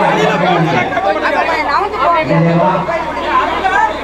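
A packed crowd of people talking and calling out all at once, many voices overlapping.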